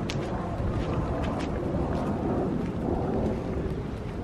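Steady rain with a low rumble of wind on the microphone, and a few sharp clicks in the first second or so.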